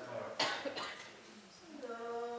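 A single sharp cough about half a second in, with voices talking around it.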